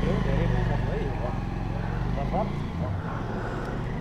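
A motorcycle engine idling steadily, with faint voices nearby.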